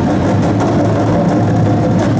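A line of snare drums playing a loud, sustained roll together, over a steady low bass tone, as part of a percussion-ensemble piece.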